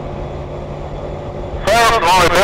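Steady drone of a vehicle's engine and road noise heard from inside a moving vehicle, a low even hum. A man's voice starts speaking near the end.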